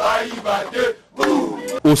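A group of young men chanting in unison, a rhythmic sung chant that breaks off about a second in.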